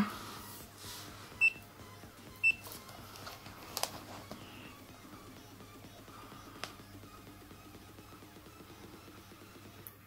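Voltcraft VC830 digital multimeter giving two short high beeps about a second apart, followed by a couple of faint clicks.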